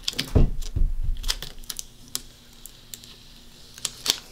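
Clear transfer tape being peeled off a vinyl decal on a wooden hanger: scattered crackling ticks as the tape lets go, with a soft thump about half a second in.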